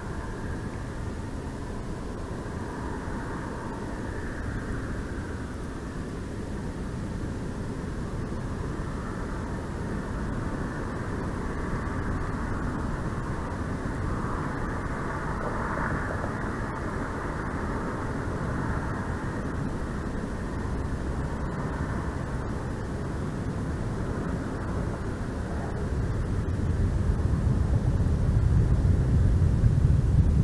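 Steady low outdoor rumble with no distinct events, growing louder and deeper over the last few seconds.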